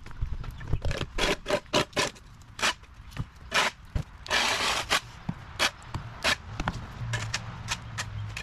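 Shovel blade scraping across a wet concrete driveway, scooping up dirt and grass debris in a run of short, irregular strokes, with one longer scrape about halfway through.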